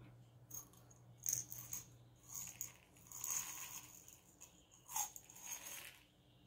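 Small crystal chips faintly rattling and clicking in a series of short bursts as they are handled and tipped out onto the grid board.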